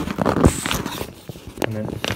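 Close handling noise of a waterproof bike seat pack: fabric rustling and scraping with scattered clicks and knocks as hands work the bag, the loudest thump about half a second in.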